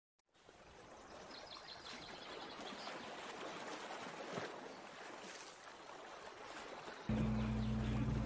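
Faint running-water sound like a stream or waterfall, with a few high chirps in the first few seconds. About seven seconds in, a steady low hum starts suddenly.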